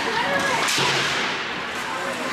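Ice hockey play ringing through an indoor rink: skates scraping the ice and a stick striking the puck, with a sharp rush of noise about half a second in. Spectators' voices are under it.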